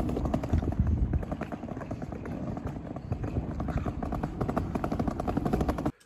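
Footsteps on pavement while walking with a handheld phone, irregular steps over a steady low rumble on the microphone.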